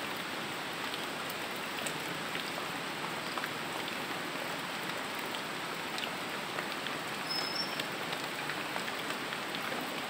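Steady rain falling: an even hiss with scattered faint drop ticks.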